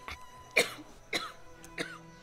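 People coughing and clearing their throats: four short coughs about half a second apart, over soft background music.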